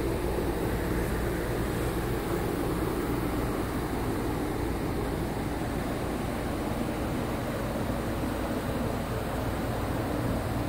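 Paint-shop ventilation fan running with a steady, even rushing hum.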